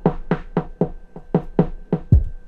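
Maschine drum pattern playing through a filter effect, with hits about four a second and a dulled top end while the filter is being set.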